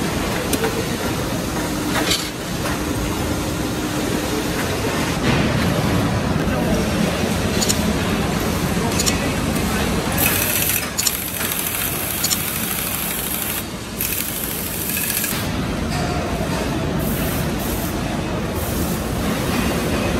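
Factory assembly-floor din: steady machinery noise with occasional clanks of metal and tools, and indistinct voices. About ten seconds in, a hiss of air starts and runs for several seconds.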